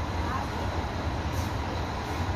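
Scania K420 coach's diesel engine idling with a steady low rumble.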